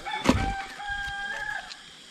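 A rooster crowing once: a single long call that rises briefly, then holds a level pitch for over a second before stopping. A sharp thump sounds just after it begins.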